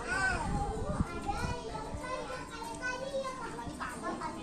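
Several young children talking and calling out over each other as they play, their voices overlapping without clear words.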